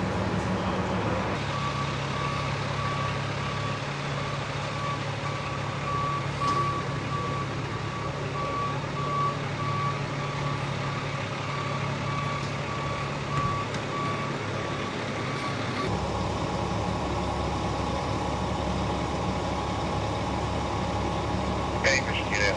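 Truck reversing alarm beeping at an even pace over a steady engine hum. The beeps start just over a second in and stop about three-quarters of the way through.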